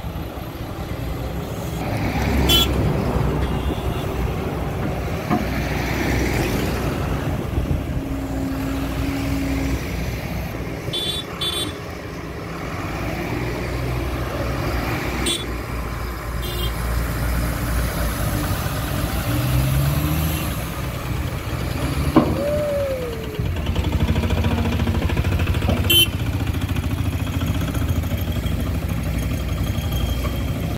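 Diesel engine of a BS6 Eicher Pro 8035 XM tipper truck running steadily while the truck tips its load, rising in revs briefly about two-thirds of the way through. A few sharp knocks and clanks come through over the engine.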